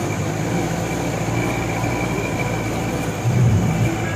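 Jeep engine running steadily on a rough dirt mountain track.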